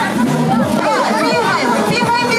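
Many children's voices chattering and calling out at once, over music.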